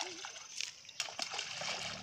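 Things thrown into shallow lake water near the bank, making several splashes about half a second to a second in, followed by a brief wash of water noise.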